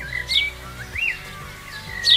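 Birds calling in the open: a few short, sharp, high chirps that glide up and down in pitch, over soft background music.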